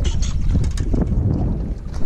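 Wind buffeting the microphone as a steady rumble, with scattered light knocks and clatters from handling gear and a fish in a small boat.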